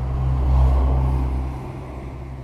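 A car passing by on the road: a rushing, rumbling noise that swells to its loudest about half a second in and then fades away.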